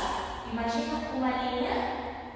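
A woman's voice speaking, giving instruction.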